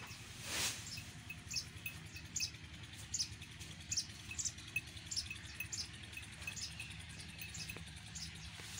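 Steady low hum of a diesel engine driving a belt-driven fodder cutter, with short high chirps repeating about once a second over it.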